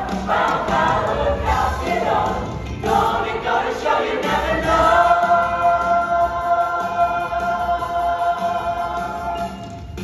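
A musical-theatre ensemble singing together with accompaniment: short sung phrases, then one long held final chord from about five seconds in, fading out near the end.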